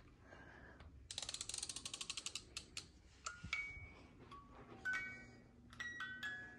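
Wind-up crib mobile being wound: a quick run of ratchet clicks for about a second. A few seconds in, its music box starts picking out a slow tune of single chiming notes.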